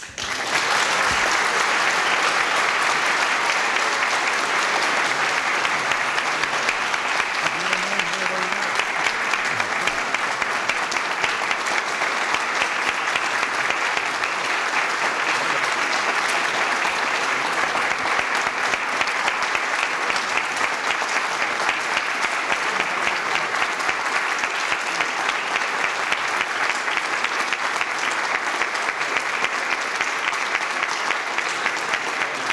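Audience applauding: a long, steady round of clapping that breaks out suddenly and holds at one level.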